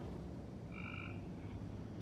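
A frog calling once, faintly: one short two-pitched call a little under a second in, over a low steady hum.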